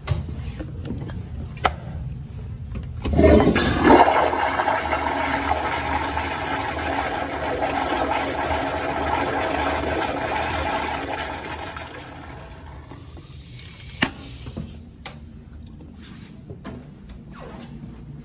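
Commercial tankless (flush-valve) toilet flushing: a loud rush of water starts suddenly about three seconds in, runs for about nine seconds and then tapers away. A short click comes shortly before the rush and another a little after it ends.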